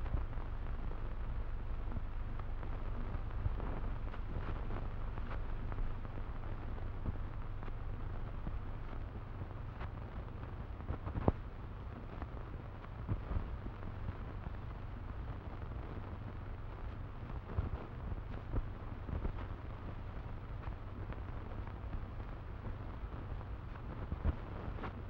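Steady hiss and low hum of an old optical film soundtrack, with scattered faint clicks and crackles and one sharper click about eleven seconds in.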